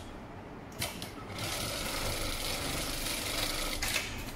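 HighTex MLK500-2516N automatic pattern sewing machine stitching a box-and-X pattern into cargo-net webbing. A couple of sharp clicks come about a second in, then a fast, steady stitching run of about two and a half seconds ends with a click near the end.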